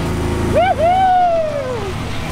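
A vehicle's engine runs steadily with a low drone. From about half a second in, a person lets out one long wordless high-pitched cry that jumps up and then slowly falls in pitch.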